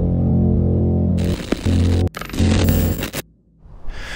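Music for a channel logo intro: a low sustained bass tone, then a few sharp hits with noisy swells, cutting off a little after three seconds in.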